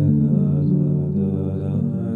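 Roland electronic keyboard playing a slow Hasidic niggun in held chords that change about once a second.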